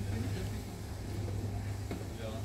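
A steady low hum under an even haze of outdoor background noise.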